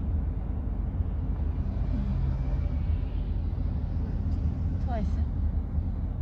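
Steady low rumble of road and engine noise inside a van's cabin, with a short vocal sound about five seconds in.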